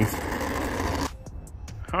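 Wind buffeting the microphone for about a second, then it cuts off suddenly to a much quieter background.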